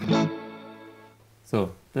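Electric guitar struck once and left ringing, fading out over about a second and a half.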